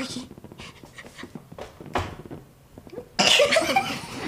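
Women laughing: scattered breathy laughs and panting, then a loud burst of laughter about three seconds in.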